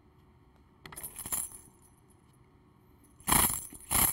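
Tambourine shaken, its metal jingles rattling: a short, softer shake about a second in, then a louder shake near the end.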